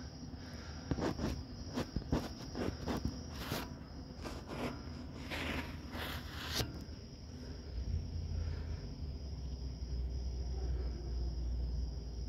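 Handling noise as the camera is moved about under the saw table: a run of irregular clicks and scrapes for the first six or seven seconds, then a faint low rumble.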